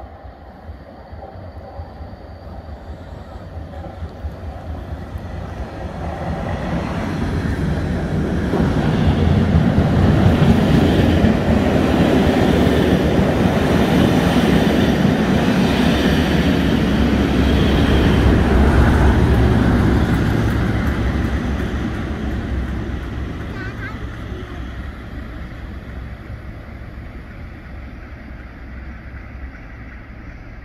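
Class 37 diesel locomotive, with its English Electric V12 engine running, passing slowly on a short train. The engine and the wheels on the rails build up, are loudest as the locomotive and stock go by, then fade away as the train leaves.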